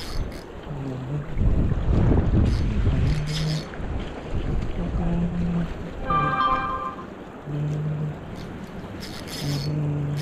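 River current rushing past, with wind buffeting the microphone in a heavy rumble from about one to three and a half seconds in. Short low hums and a brief pitched call about six seconds in sit over the water noise.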